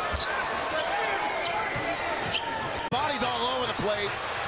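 Basketball bouncing on the court during live play, over steady arena crowd noise, with an abrupt edit cut about three seconds in.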